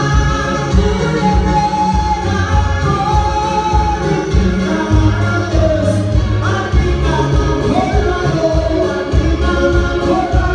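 Live gospel song: a man singing into a microphone, with long wavering held notes, over a Roland BK-3 arranger keyboard playing chords and a steady low bass pulse.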